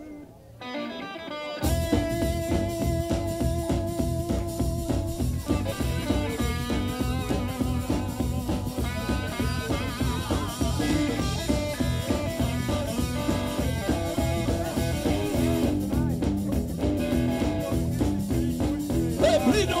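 Live blues band playing an instrumental intro. A few lone notes come first, then at about two seconds in the whole band comes in: electric guitar, upright double bass and drum kit, with long held notes from a harmonica.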